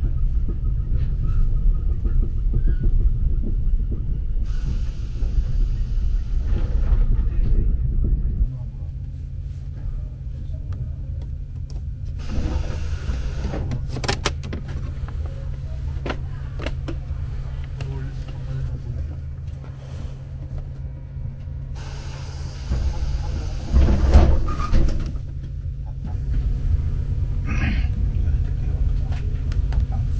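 Interior of a Mugunghwa passenger train car in motion: a steady low running rumble with the lower end easing off about eight seconds in. Two louder noisy stretches with sharp knocks come about twelve seconds in and again about twenty-two seconds in, the loudest near the middle of the second.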